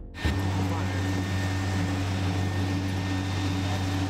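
Steady machine drone around a parked aircraft on the apron: a strong low hum with a steady higher tone above it under an even hiss. It starts abruptly about a quarter second in.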